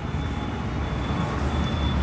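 A handheld eraser rubbing across a whiteboard, a steady, even wiping noise over a low rumble that grows slightly louder.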